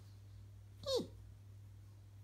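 A person's voice making one short, high squeak, "eep", that drops quickly in pitch: a pretend creature call voicing a plush dragon.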